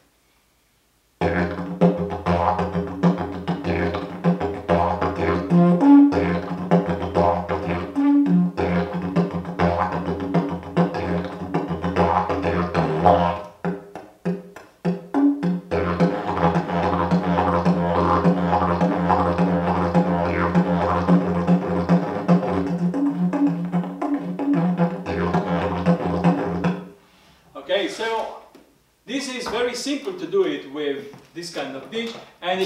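Didgeridoo played with a steady low drone, broken a few times by short, higher overblown toots. It is played in two long passages with a brief pause between them.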